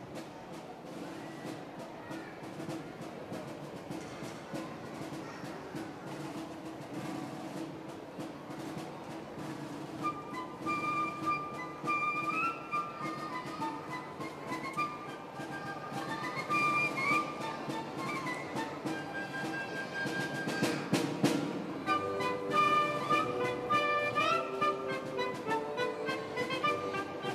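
Orchestra playing a medley of children's songs: it opens softly over a drum roll, a piccolo melody enters about ten seconds in, and after a crash near twenty seconds the full orchestra joins, getting louder.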